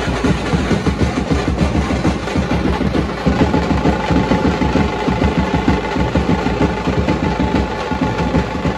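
A street brass band playing: fast, dense beats on bass drums and stick-played side drums, with a held trumpet note joining about three seconds in.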